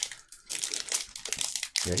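Crinkling foil wrapper of a Magic: The Gathering collector booster pack being torn open by hand, a dense crackle that starts about half a second in.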